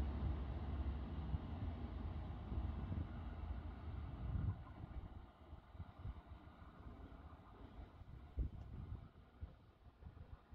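Two-car Lint diesel train pulling away, its low engine rumble fading into the distance about halfway through. Wind buffets the microphone, with one sharp gust or thump near the end.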